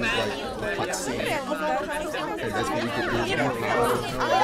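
Several people's voices talking over one another, no single voice standing out.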